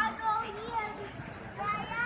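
Indistinct chatter of a crowd in a large hall, with a high-pitched voice rising above the murmur near the start and again near the end.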